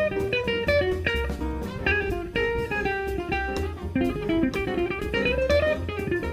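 Electric guitar playing a fast, improvised-style single-note jazz line, many short notes in quick succession, with low bass notes underneath.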